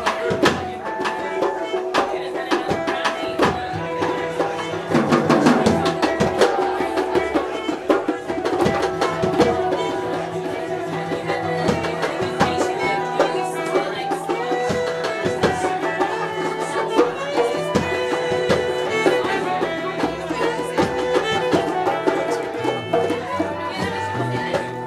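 Music from a live jam session: sustained pitched instruments over a steady run of percussion strikes.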